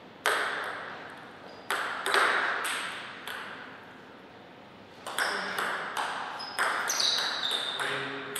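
Celluloid-type table tennis ball clicking off bats and the table, each hit followed by a short ring in the hall. A few scattered hits come in the first three seconds, then a fast rally from about five seconds in, with hits roughly every third of a second.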